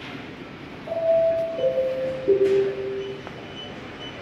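Store public-address chime: three steady notes stepping down in pitch, each ringing on under the next, sounding the signal that an announcement to customers follows. A steady hum of shop background noise runs underneath.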